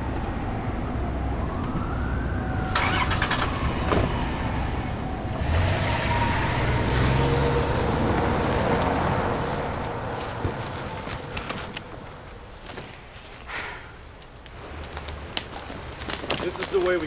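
A van driving off: engine and tyre rumble on asphalt that swells through the middle and fades away about three-quarters of the way through. A gliding tone sounds near the start.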